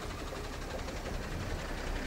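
Flatbed tow truck's engine running as it drives past, with steady street traffic noise and a low rumble.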